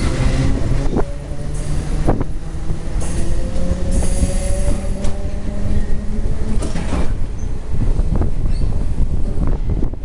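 Electric suburban train running, heard from its open window: a steady rumble with a thin whining tone that slowly rises in pitch. The wheels click sharply over rail joints a few times, at uneven gaps.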